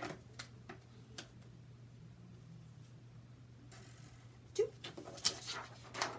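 Faint scratching and tapping of a Sharpie and ruler on a sheet of paper as a short line is drawn, then paper rustling with a few sharp clicks as the sheet is picked up and handled.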